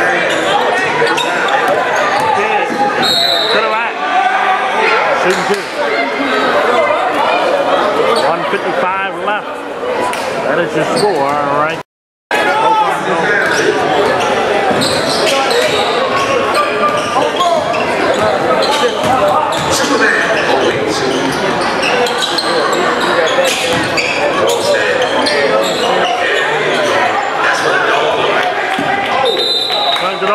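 Basketball game sounds in a gymnasium: a ball bouncing on the hardwood court and players' feet over steady crowd chatter. The sound drops out completely for a moment about twelve seconds in.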